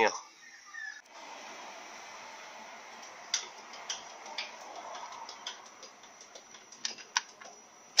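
A spanner being worked on the steel level plug of a Toyota transfer case: scattered light metal clicks and taps, a few seconds apart, over a steady workshop hiss. The plug is being loosened to check the transfer-case oil level.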